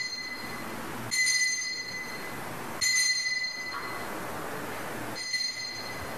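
Altar bell rung at the elevation of the host, marking the consecration: a bright ringing tone that fades, struck three times, about a second, three seconds and five seconds in, with the ring of an earlier strike still sounding at the start.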